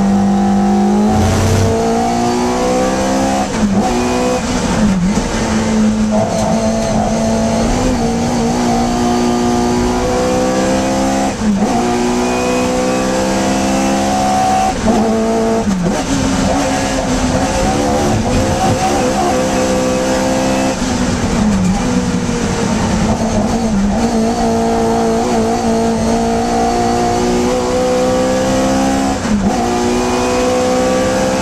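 In-cabin sound of an 1150cc Imp race car's four-cylinder engine at racing revs. The pitch climbs steadily and then drops sharply, about seven times through the lap.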